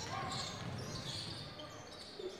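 Faint game sound on an indoor basketball court: a basketball dribbled on the hardwood floor, with shoes on the court and crowd voices in the gym's echo.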